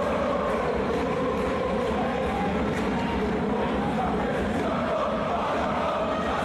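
Basketball crowd chanting and singing steadily in the stands.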